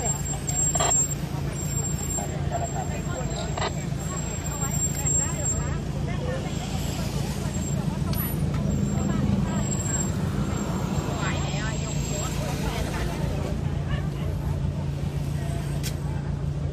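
A vehicle engine running with a steady low hum, heard from inside the cabin, with faint voices from people outside.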